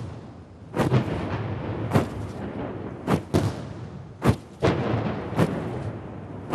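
Ceremonial salute cannons firing a gun salute: a series of sharp booms at about one a second, each with a short ringing tail.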